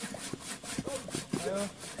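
Two bow saws cutting into a tree trunk, their blades rasping through the wood in quick, even back-and-forth strokes. Brief voices sound faintly between the strokes.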